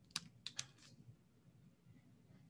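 About five faint computer keyboard clicks in the first second, then near silence.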